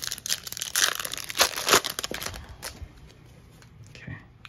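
Hockey card pack wrapper (2023-24 Upper Deck Series Two) being torn open and crinkled by hand: a crackling rustle for the first two to three seconds, loudest in the middle, then fading to faint handling.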